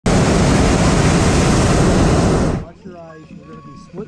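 Propane burner of a hot air balloon firing with a loud, steady roar, then cutting off abruptly about two and a half seconds in.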